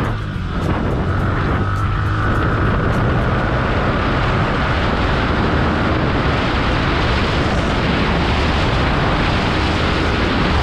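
Heavy, steady wind noise buffeting the action camera's built-in microphone while a Yamaha R15 v3 motorcycle rides at speed, with its single-cylinder engine running underneath.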